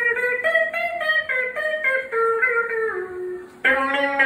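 Solo guitar playing a melody of single plucked notes, about three a second, stepping mostly downward, with a short dip before a new phrase starts with a strong note near the end.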